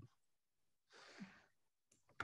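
Near silence on a video call, with a faint exhaled breath about a second in.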